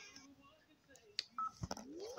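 Gap between two clips' soundtracks in a phone's video feed: the music fades out, then a few short electronic clicks and a brief beep come about a second in, followed by a short rising tone as the next clip's audio begins.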